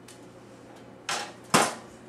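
A plate and cutlery being handled: a brief scrape about a second in, then a sharp knock half a second later.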